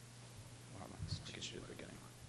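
A few hushed, near-whispered words spoken away from the microphone, lasting about a second in the middle, over a steady low hum.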